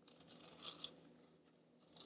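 Handheld plastic pencil sharpener's blade shaving a wooden pencil as it is twisted: a faint dry scraping in two spells, the second starting near the end. The shavings are still coming off, so the point is not yet fully sharp.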